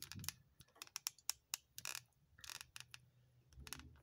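Faint, irregular clicks and taps of a camera being handled and repositioned.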